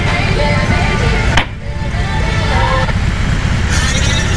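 BMW R18 Bagger's large boxer twin engine running low under background music. The sound breaks off abruptly about a second and a half in, then resumes.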